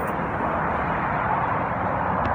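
Steady traffic noise from the freeway overpass overhead, a constant even rumble with no distinct passing vehicle.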